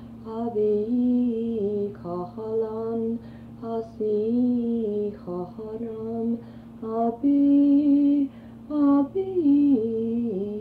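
A woman's voice singing short, wordless, gliding phrases, one after another, over a steady low hum.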